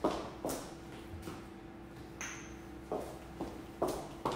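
Faint scattered knocks and clicks from someone moving about a kitchen and fetching spice jars, over a steady low hum. A short high squeak about halfway through.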